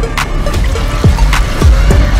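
Action-trailer music: a heavy, loud score punctuated by repeated deep booms that drop sharply in pitch, about one every two-thirds of a second, with sharp percussive hits between them.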